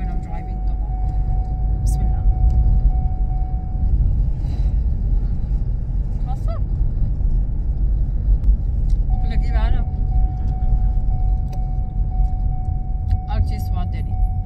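Low, steady rumble of a car's engine and road noise heard from inside the cabin while driving. A steady high tone sounds for the first few seconds and again from about nine seconds in.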